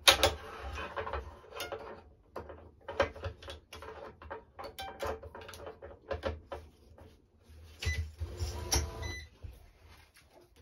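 Irregular clicks, knocks and rattles of hands working a racket on a Wilson Baiardo stringing machine: string, clamps and frame being handled as the mains are threaded, and the racket turned on the machine. The loudest knock comes right at the start, and there is a busier rattling stretch about eight to nine seconds in.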